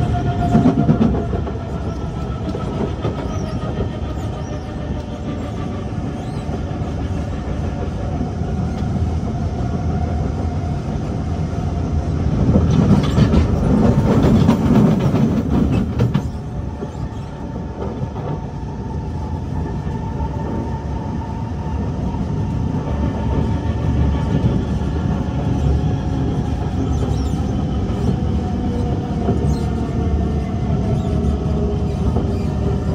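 Kawasaki C151 MRT train running on the line, with continuous wheel-on-rail rolling noise and a motor whine whose pitch glides up and down as the train changes speed. A louder rumbling surge comes from about 12 to 16 seconds in.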